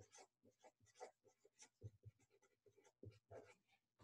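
Felt-tip marker writing on paper: a run of faint, short, irregular strokes as numbers and letters are written.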